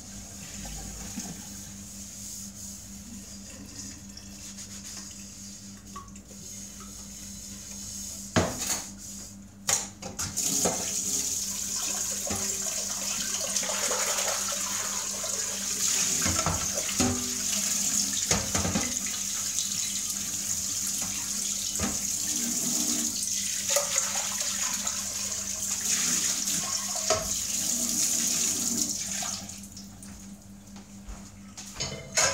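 Kitchen tap running into a stainless steel sink as a pot is rinsed under it. The water comes on about a third of the way in, just after a few knocks of the pot, and stops shortly before the end. Before that there is quieter handling of the pot.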